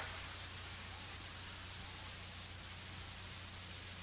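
Faint, steady hiss with a low hum underneath and no other sound: the soundtrack's background noise.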